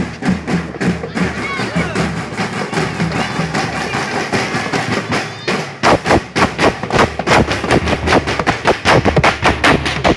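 Marching drums in a parade, with voices over them. About halfway in, a loud, steady, fast drumbeat takes over at roughly four strokes a second.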